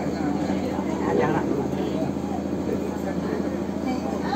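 Overlapping chatter of a group of people, with no single voice standing out, over a steady low hum.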